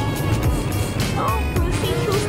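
Music: a song with a steady bass beat, with a singing voice coming in about a second in.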